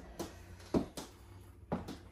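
A few light knocks and clicks from objects being handled in a kitchen, with the strongest about three quarters of a second in, over a faint low hum.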